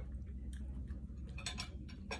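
Light clicks and taps of a plastic food container and a small sauce cup being handled on a table, with a quick run of clicks about one and a half seconds in, over a low steady hum.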